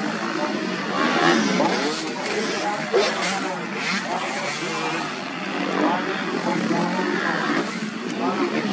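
Motocross dirt bikes racing through a corner, their engines revving up and down as riders throttle out one after another, with the pitch rising and falling.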